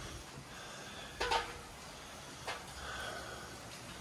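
Heavy rain outside, a faint steady hiss, with two short sniffs through the nose about a second in and again halfway through.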